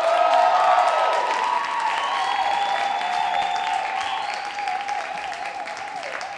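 Theatre audience applauding and cheering, dying down gradually toward the end.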